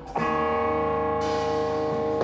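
Slow live rock with a Telecaster-style electric guitar: a new chord is struck just after a short break at the start and left to ring, its notes held steady.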